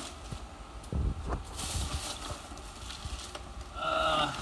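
Rummaging through boxed items and plastic: a couple of low thumps about a second in, a brief burst of plastic rustling, and light knocks and clicks of things being handled.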